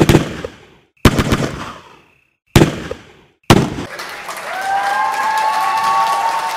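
Radio-station intro sound effects: four loud, echoing bangs about a second apart, then crowd cheering and applause from about three and a half seconds in.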